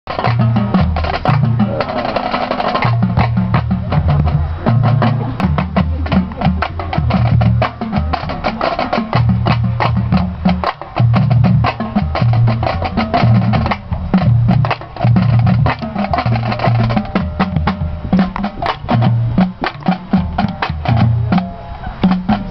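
Marching band drumline playing a cadence: fast snare strokes and stick clicks over bass drums hitting at several pitches, steady throughout.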